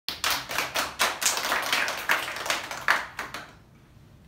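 A small group applauding with hand claps that thin out and die away about three and a half seconds in.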